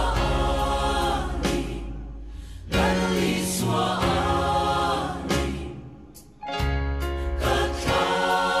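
Christian gospel song: voices singing as a choir over instrumental backing with a strong bass. The phrases swell and fade twice, dipping low about two and a half and six seconds in, each time followed by a sudden loud new entry.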